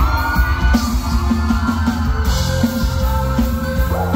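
A live band with electric guitars, bass and drum kit playing a Thai luk thung song, with a woman singing lead into a microphone over it through a loud PA.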